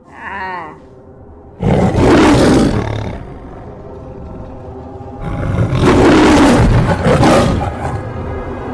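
Two loud dinosaur roar sound effects, the first about a second and a half in and the second about five seconds in, each lasting a couple of seconds. A brief high, wavering call comes just before them at the start, over a low music bed.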